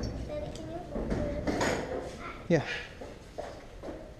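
Speech: quiet voices talking, with 'yeah' spoken near the end, and a few small knocks among them.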